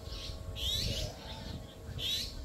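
A bird calling with short, high chirps, repeated a few times.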